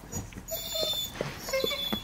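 A dog whining, two short thin whines about half a second and a second and a half in; the owner takes it as the dog asking for its dinner.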